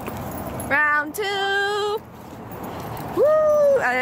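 High-pitched, drawn-out wordless vocal cries: a short rising one, then one held steady for under a second, and a shorter falling one near the end, over a low steady outdoor background noise.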